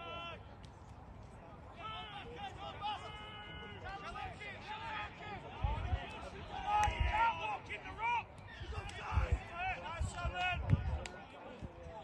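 Men shouting during a rugby league match: unclear calls and appeals from the players. A few short low thumps come in the second half.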